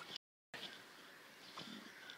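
Near silence: faint outdoor background hiss after a spoken word ends at the very start, with a soft, barely audible sound about one and a half seconds in.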